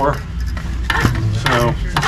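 Hydraulic shop press being pumped, with a steady low hum, a hiss and a few clicks; its rebuilt cylinder is airbound and still low on fluid.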